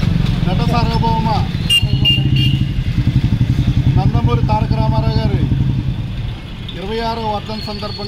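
A road vehicle's engine running close by, a low, fast-pulsing sound that is loudest in the middle and fades away about six seconds in, under a man's speech.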